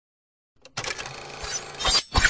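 Silence, then about three-quarters of a second in a dense clattering, mechanical-sounding noise starts abruptly and runs on, with a sharp click just before the end.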